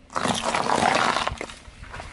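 Car tyre rolling over a pile of pickled gherkins on asphalt and crushing them: a loud burst of crunching and squashing lasting about a second, then a few smaller cracks as the last ones burst.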